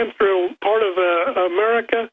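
Speech only: a man talking over a telephone line.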